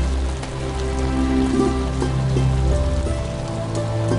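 Heavy rain falling steadily, under a background music score of sustained low notes and chords; the bass note changes about three seconds in.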